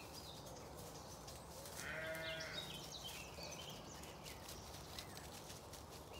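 A Zwartbles sheep bleats once, just under a second long, about two seconds in. Small birds chirp and sing faintly throughout.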